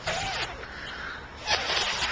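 Street traffic: a car passing on the road, its tyre and engine noise swelling from about one and a half seconds in, after a short rush of noise at the start.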